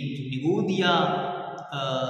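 A man's voice reciting in a drawn-out, chant-like way, with held and gliding pitches, rather than in ordinary speech.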